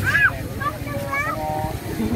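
Young children's high-pitched voices: a brief squeal at the start, then short sung-out calls, over a steady low background rumble.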